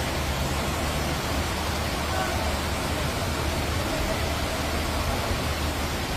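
Steady rushing noise of torrential rain and floodwater running through a city street.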